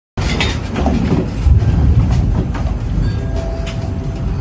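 A building shaking in a strong earthquake: a loud, deep rumble with continuous rattling and clattering of the room's fittings.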